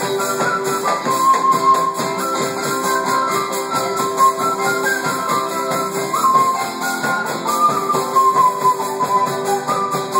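Live instrumental folk music: a wooden flute plays a wandering melody over strummed acoustic guitar, electric guitar and a large drum.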